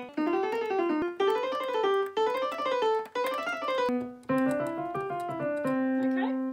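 Korg digital piano playing a five-finger exercise on the white keys: quick runs of five notes up and back down, about one run a second, each starting one note higher. It ends on a longer held note.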